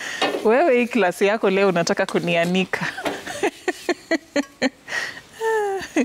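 Food frying in a pan with a faint sizzle, and a cooking utensil clicking and scraping against the pan about halfway through, under people talking and laughing.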